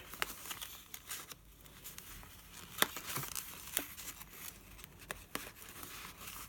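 Paper pages of a handmade journal rustling and crinkling as they are handled and pushed into place, with a few sharp clicks, the loudest nearly three seconds in.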